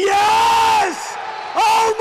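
A male football commentator's excited, drawn-out shouts as a goal goes in: one long held yell, then after a short gap more long yells, with crowd noise beneath in the gap.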